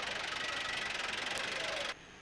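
A vehicle engine running steadily close by, with a fast, even pulse; it cuts off abruptly near the end.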